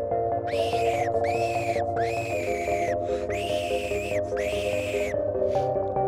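Five drawn-out squeals from a fox call, each about half a second long, rising then sagging slightly in pitch, in a run that ends about five seconds in. Background music with mallet-instrument notes plays under them.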